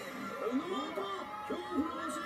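Several people's voices overlapping in rising and falling calls, with faint music, played through a TV speaker.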